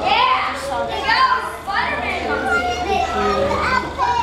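Young children's high-pitched voices, chattering and giving several short rising squeals with no clear words.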